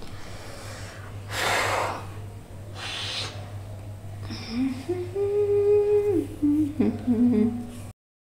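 Two short soft swishes in the first half, then a woman humming a held note for about two seconds, followed by a few lower hummed sounds near the end. A steady low hum runs underneath.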